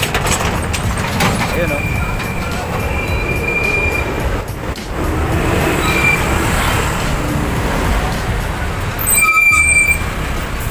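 Wind buffeting the microphone and road noise from riding on a motorcycle through street traffic. A thin high tone sounds briefly a few times, loudest near the end.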